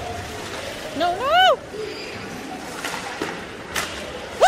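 A spectator's shouted call about a second in, rising and then falling in pitch over about half a second, above the steady hiss of arena noise. A single sharp knock near the end.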